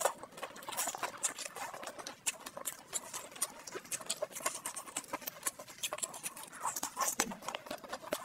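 Close-miked eating sounds: a dense, irregular run of sticky, wet clicks and smacks from chewing and from plastic-gloved hands pulling apart saucy, cheese-covered chicken.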